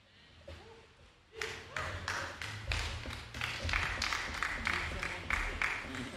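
A small group of people clapping and laughing, starting about a second and a half in.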